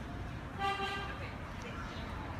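A car horn sounding one short, steady toot of about half a second, over street traffic background.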